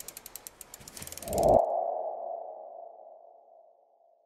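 Animated logo sting sound effect: a rapid run of ticks that swells into a single ringing tone, which fades away.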